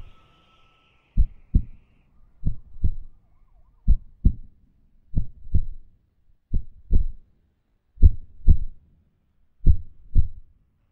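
Heartbeat sound effect: paired low lub-dub thumps, about one pair every second and a half, seven pairs in all, while a higher sustained sound fades out in the first two seconds.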